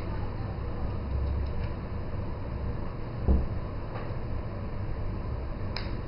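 Handling of an iPhone 3G as its SIM tray is pushed in by hand, over a steady low hum, with one short knock about three seconds in and a faint click near the end.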